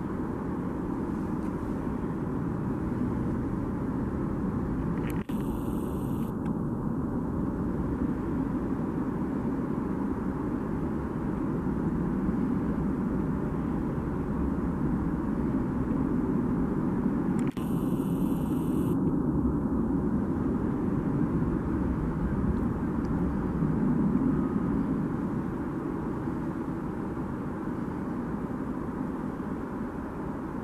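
A steady low rumble of background noise, dipping sharply for an instant twice, about five and seventeen seconds in.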